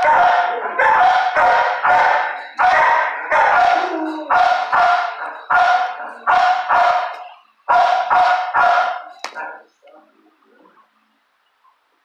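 A dog barking loudly in quick bursts of three or four barks, with the barking stopping a couple of seconds before the end.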